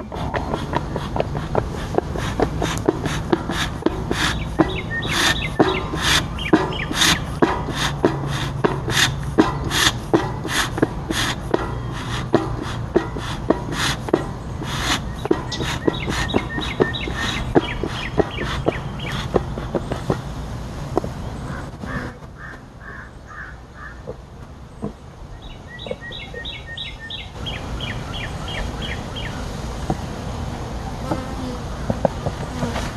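Bee smoker bellows being pumped over and over, a sharp puff about two or three times a second, stopping about two-thirds of the way through. Near the end a bird sings a quick run of repeated chirps.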